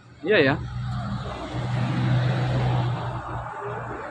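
A car driving past on the road: tyre noise with a low engine hum, swelling to its loudest about two seconds in and then easing off.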